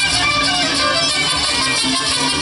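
A mariachi ensemble playing live, with strummed guitars and violins.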